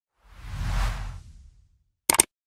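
A whoosh sound effect for an on-screen graphic transition: a single swell of hiss over a deep rumble that builds about a quarter second in, peaks, and fades away over about a second.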